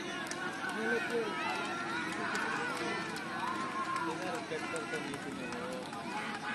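Crowd of spectators talking, many voices overlapping into a steady chatter with no single voice standing out.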